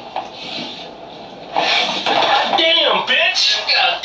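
A man laughing. The laughter starts about one and a half seconds in, after a quieter moment, and is loud.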